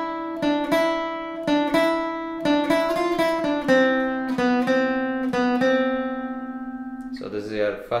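Acoustic guitar playing a slow single-note lick, about fifteen notes picked one at a time on the upper-middle strings, the last note left to ring for about a second and a half before it stops.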